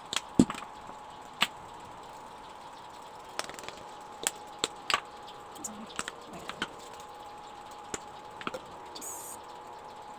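Scattered sharp clicks and knocks of kitchen utensils and a dried-herb container being handled, over a steady high-pitched hum. The loudest knocks come in the first second and a half, and a brief hiss comes near the end.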